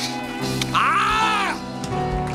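Sustained background music chords, with one long wordless vocal cry about a second in that rises and then falls in pitch.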